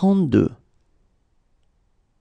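A voice counting aloud speaks one short number word right at the start, then near silence follows.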